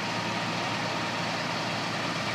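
A fire engine's motor running steadily: a constant low hum under an even wash of noise.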